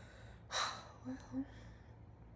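A woman's breathy exhale, like a tired laughing sigh, about half a second in, followed by two short soft voiced hums.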